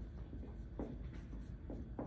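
Marker writing on a whiteboard: a few faint, short strokes as letters are drawn, over a steady low room hum.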